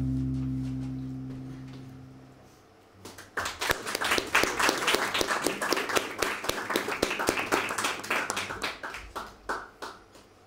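The last held chord of a song dies away over the first couple of seconds. Then an audience applauds for about seven seconds, the clapping thinning out and stopping just before the end.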